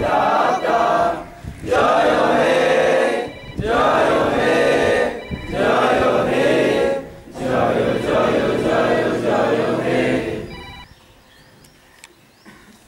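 A group of voices singing together in unison, the phrases broken by short pauses about every two seconds; the singing ends about eleven seconds in.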